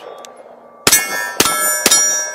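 Three pistol shots about half a second apart from a Sig Sauer P320 X5 Legion, starting about a second in. Each is followed by the high, lingering ring of a steel target being hit.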